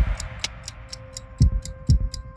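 Intro music built on a clock-like ticking, about four to five ticks a second, over a held drone, with deep bass hits at the start and twice near the end.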